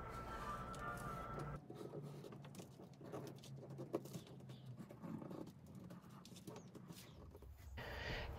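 Faint scratching of a pencil on paper as it traces around a paper shape template, with a few light ticks.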